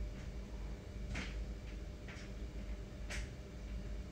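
Screws being turned in by hand to fix a radiator bracket to the wall, with a short scratchy click about once a second as the screwdriver turns.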